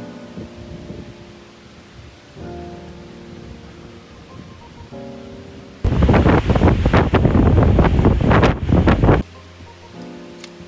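Soft instrumental background music, broken about six seconds in by some three seconds of strong wind gusting hard on the microphone. The music comes back near the end.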